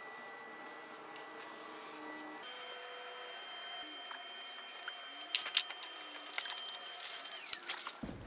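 Permanent marker drawn along the edge of a paper template onto a wooden panel: faint scratching over a few faint steady tones, with scattered short clicks and scrapes in the second half.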